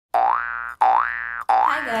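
A synthesized sound effect played three times in a row: each is a tone of about half a second that slides up in pitch and then holds.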